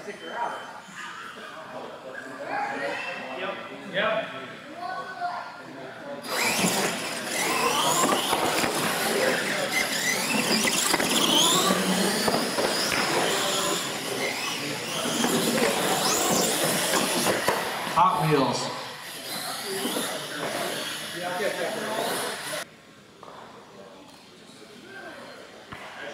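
Radio-controlled monster trucks racing on a smooth concrete floor: electric motors whining, rising and falling in pitch, with tyres squealing, in a loud stretch that starts about six seconds in and stops abruptly a few seconds before the end. Voices in the hall are heard before and after it.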